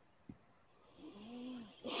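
A person's soft, drawn-out vocal sound, a hum-like tone whose pitch rises then falls, with some breath in it, about a second in. Speech begins right at the end.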